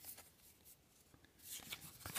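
Near silence: room tone, with a faint rustle of baseball cards being slid off a hand-held stack near the end.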